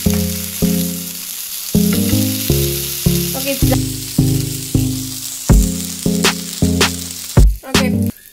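Background music, a melody of short, evenly struck notes, over the hiss of chicken salami slices sizzling on a grill pan; the sizzle fades about halfway through.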